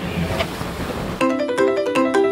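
Motorboat running with wind on the microphone. About a second in, this cuts abruptly to background music of quick, plucked-sounding notes.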